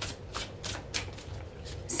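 A deck of tarot cards being shuffled by hand: a string of short card-on-card snaps, about three a second.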